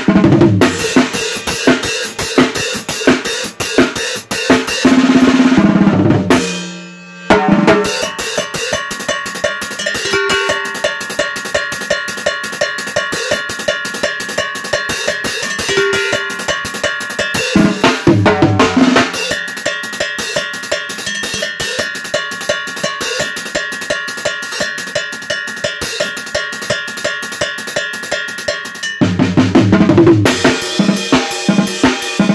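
Drum set with metal-shelled drums and a cowbell played with sticks in a fast, steady rhythm, with a brief break about six to seven seconds in.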